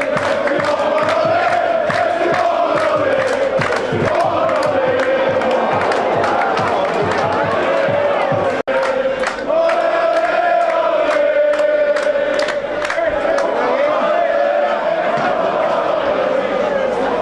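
Football crowd singing a chant in unison, a long sustained melody over a steady run of sharp rhythmic beats. The sound cuts out for an instant about halfway through.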